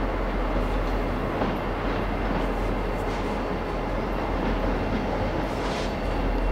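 Norfolk Southern helper diesel locomotives approaching along the main line, a steady rumble of engines and wheels on the rails.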